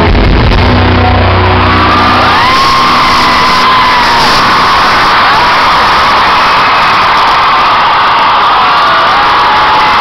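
Live rock band holding a final electric guitar chord that stops about two seconds in, then a large concert crowd cheering and screaming, with shrill screams rising and falling in pitch.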